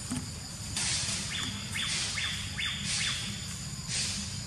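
A bird calling a quick run of about five descending notes, over a loud high hiss of insects in the trees.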